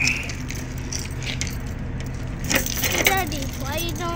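Keys jangling and a padlock being unlocked and removed from a semi-trailer's rear door latch, with a few sharp metallic clicks, over a steady low hum.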